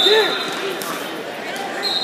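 Wrestling shoes squeaking on the mat during a takedown scramble, one high squeal at the start and another near the end, over shouting voices in the gym.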